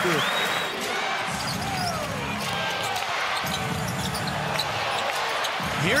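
Basketball game sound in an arena: steady crowd noise with short sneaker squeaks on the hardwood court.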